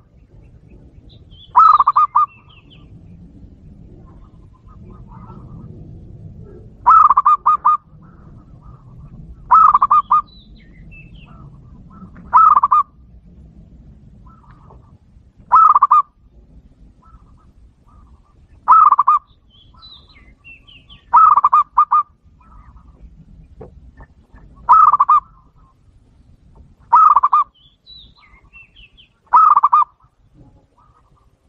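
Zebra dove (perkutut) cooing: ten short phrases, each a quick run of staccato notes, repeated every two to three seconds.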